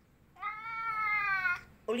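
A domestic cat's single meow, a bit over a second long, starting about a third of a second in and rising slightly before falling away: a hungry cat calling for food.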